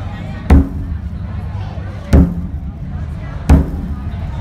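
Large barrel drum struck in slow single beats, three deep strikes about one and a half seconds apart.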